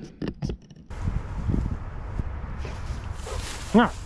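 A few sharp clicks, then footsteps swishing through tall dry grass with a low rumble of wind on the microphone.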